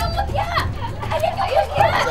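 Several people's voices: excited, overlapping chatter and exclamations, over a low steady hum.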